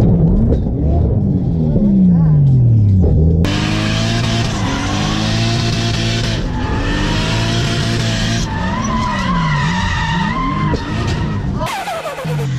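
Drift car's engine heard from inside the cabin, revving up and down repeatedly as the car slides. From about three and a half seconds in, tyre squeal joins it, and both cut off abruptly just before the end.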